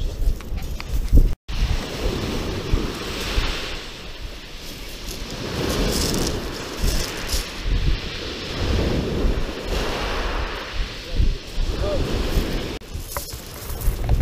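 Sea waves breaking on a shingle beach, the surf swelling and fading every few seconds, with wind buffeting the microphone.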